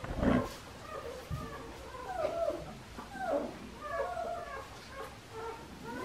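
Five-week-old Australian Shepherd puppies whining and yipping as they wrestle together, a string of short cries that rise and fall in pitch, with a thump just after the start.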